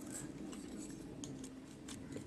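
A few faint, light clicks of small plastic model-kit parts being handled, over low room tone.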